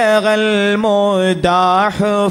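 A single male voice chanting Arabic devotional praise of the Prophet (salawat) in long, held, melismatic notes that slide and turn between pitches. There are brief breaths or breaks between phrases, about one and a half seconds in and near the end.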